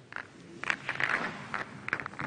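Pool balls clacking against one another in a quick, uneven series of sharp clicks as the referee gathers and racks them for the next frame.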